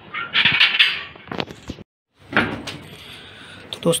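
Iron grille gate being unbolted and opened: metal scraping and clanking with a few sharp knocks in the first second and a half. This is followed by a moment of dead silence and more handling noise.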